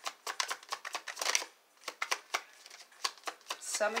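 A tarot deck being shuffled by hand, the cards flicking and slapping together in a quick run of clicks for about a second and a half. After a short pause come slower, scattered flicks.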